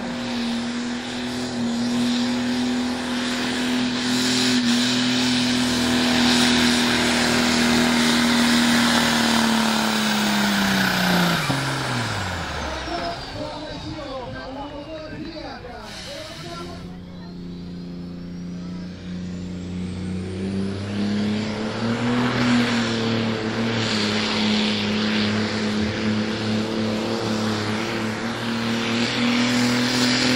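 Turbocharged diesel pulling tractors running under full load. An engine holds high, steady revs with a turbo whistle, then its revs fall away sharply and the whistle glides down. After a cut about halfway through, another engine's revs climb with a rising turbo whistle, then hold steady.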